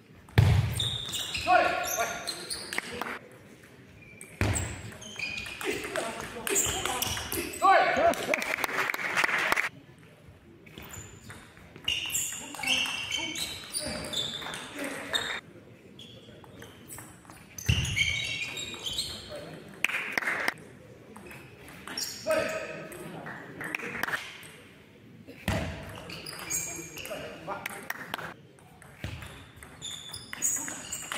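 Table tennis play in a large sports hall: the ball clicks off rackets and table in several rallies separated by short pauses, with voices of players and spectators.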